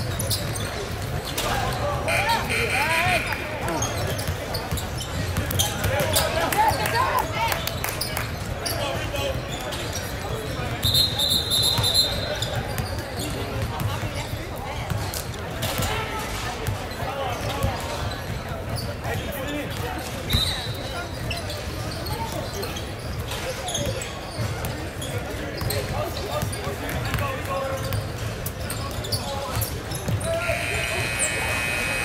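Indoor basketball game sounds: a ball bouncing on a hardwood court, sneakers squeaking and voices of players and spectators echoing in a large gym. A referee's whistle blows briefly about eleven seconds in, with a shorter high tone near twenty seconds.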